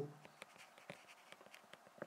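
Faint short ticks and taps of a stylus writing by hand on a tablet screen.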